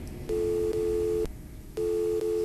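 Telephone call tone on a phone line: a steady two-note electronic beep, each about a second long with half-second gaps, repeating as the call is placed.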